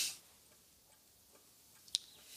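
Faint ticking of a mantel clock, with a sharper click near the end.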